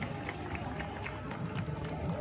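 Busy pedestrian-street ambience: a steady murmur of passers-by with footsteps on paving, short clicks about three a second.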